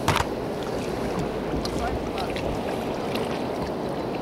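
Steady rush of wind and sea water around a kayak on the open sea, with one sharp knock right at the start.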